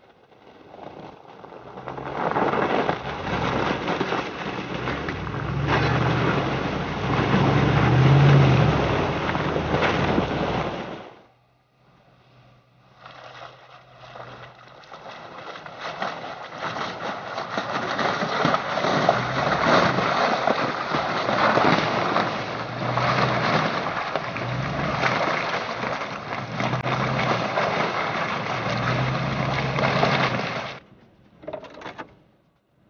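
Range Rover P38's 4.6-litre V8 engine running under load as the vehicle wades through an icy, half-frozen puddle, with water splashing. The sound drops out briefly partway through, then comes back.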